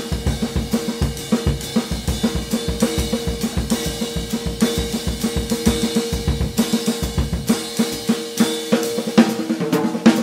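Jazz drum kit played solo with sticks: a fast run of strokes on the drums with cymbal hits, thinning out about seven seconds in.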